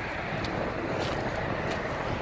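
Steady outdoor background noise: an even low rumbling hiss with no distinct events.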